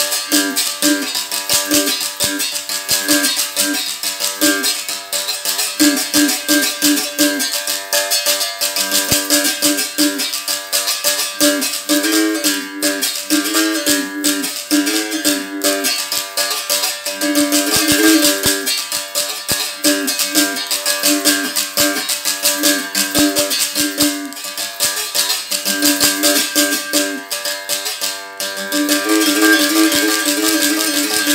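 Berimbau struck with a wooden stick while a caxixi rattle shakes in the same hand, in a steady repeating rhythm. The stone (dobrão) is pressed against and lifted off the steel wire to switch between notes and to give the buzzing 'pedra chiada' effect.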